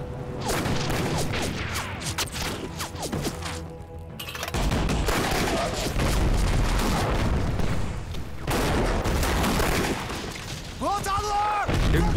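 Heavy gunfire in a battle, many shots overlapping. It thins briefly about four seconds in, then comes back denser and louder. A man yells near the end.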